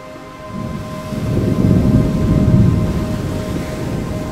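Rushing, rumbling crash of an ocean wave breaking close up, swelling about half a second in, peaking near the middle and fading toward the end, over background music with sustained tones.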